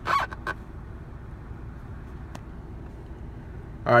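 Steady low hum inside a car cabin, with a single faint click a little past halfway.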